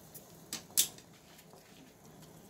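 Two sharp clicks about a quarter second apart, the second louder, of wooden chopsticks knocking against a stainless steel pot, over the faint bubbling of water boiling with pork bones.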